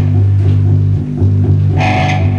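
A small band playing live in a room: an electric guitar over a steady bass line, with a drum kit behind.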